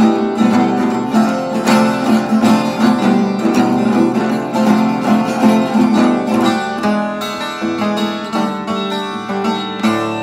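Acoustic guitar strummed in a steady rhythm, chord after chord, with a final chord struck near the end that rings on.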